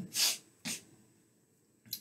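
A man's breath noises: a sharp, noisy breath just after the start, a shorter one under a second in, then a quick inhale near the end.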